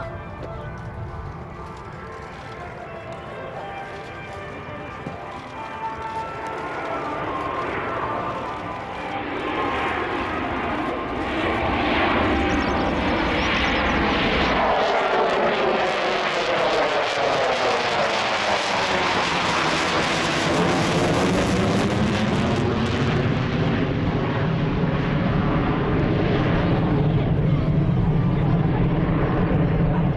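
F-15 Eagle jet fighter's twin turbofan engines, building steadily louder over the first dozen seconds as the jet approaches and passes overhead, then staying loud. As it passes, the noise takes on a phasing whoosh that sweeps down and back up in pitch.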